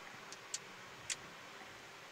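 Faint steady hiss of the cockpit radio audio between transmissions, with two faint ticks about half a second and a second in.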